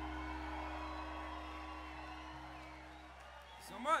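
The last chord of an electric guitar and bass guitar ringing out and slowly fading at the end of a blues-rock song. Near the end, a short shouted "man" that rises and falls in pitch.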